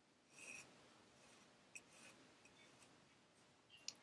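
Near silence, with faint rustling of silk yarn drawn through the warp threads of a small round wooden loom, the clearest brush about half a second in, and a few light ticks later.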